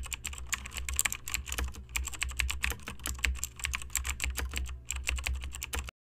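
Computer-keyboard typing sound effect: rapid key clicks over a low hum, pausing briefly twice. It cuts off suddenly near the end.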